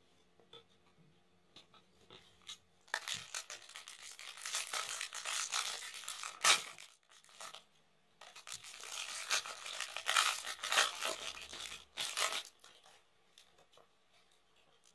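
Foil trading-card pack being torn open and crinkled by hand, in two long stretches of crackling, the first starting about three seconds in and the second about eight seconds in.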